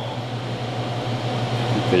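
Steady low hum with a hiss over it, the room's background machinery noise.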